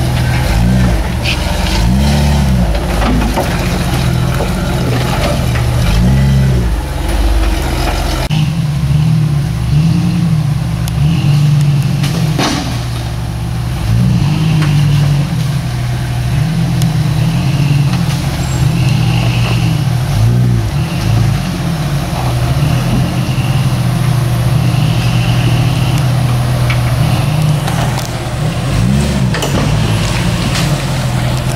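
Lifted Jeep Cherokee XJ's engine being blipped up and down in repeated short surges while crawling over rocks, with occasional knocks.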